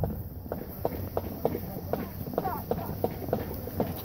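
Footsteps of a marching band walking on pavement: a quick, loose run of light clicks, about four a second, with faint voices underneath.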